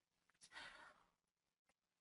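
Near silence, with one faint, short breath from the presenter into the microphone about half a second in.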